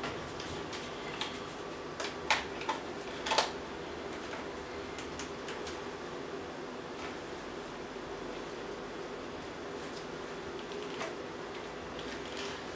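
A few sharp plastic clicks and knocks about two to three and a half seconds in, then fainter ticks, as a wireless flash transmitter is handled and fitted onto a camera's hot shoe. A steady hum runs underneath.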